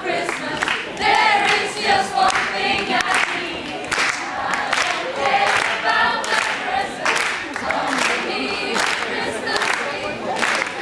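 A mixed group of young voices singing together as a choir, with no clear instrumental backing.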